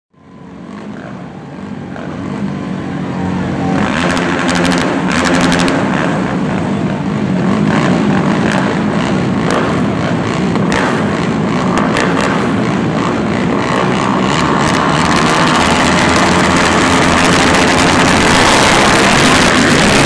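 Several racing quad (ATV) engines idling and revving at the start line, with sharp throttle blips, then running together at high revs in the second half as the pack races off.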